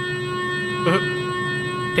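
A steady drone of several held tones, like a sustained synth pad in a suspense film score, with a brief voice sound about a second in.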